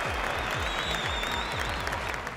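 Crowd applause, a recorded sound effect played as congratulations, with music underneath; it fades out near the end.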